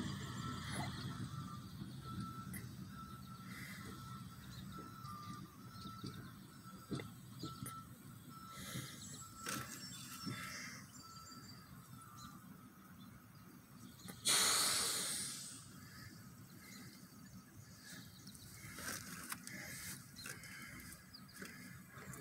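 Quiet outdoor ambience with a faint high chirp repeated about every half second through the first half. A little past the middle comes one loud hiss that starts sharply and fades over a second or so.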